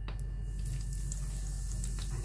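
Hot cooking oil in a nonstick frying pan starting to sizzle and crackle about half a second in, foaming up as it bubbles.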